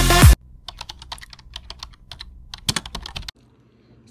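Electronic dance music cuts off abruptly about a third of a second in. About three seconds of light, irregular clicks follow, then it falls almost silent.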